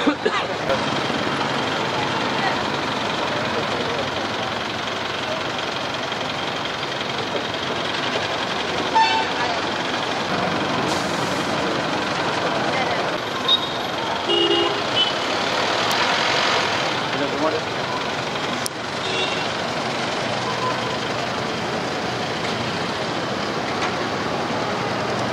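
Busy roadside noise around a bus: steady traffic and engine noise mixed with the voices of a crowd, with a few short horn toots near the middle.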